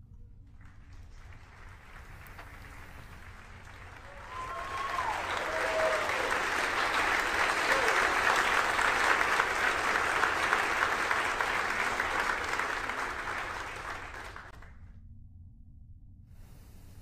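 A room of people applauding and cheering as the rocket's stage separation and second-stage engine start are confirmed. The applause swells about four seconds in, with a few short cheers early on, then dies away shortly before the end.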